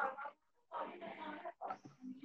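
A man's voice slowly drawing out syllables in three stretched stretches with short breaks between them, as in dictating a word while writing it.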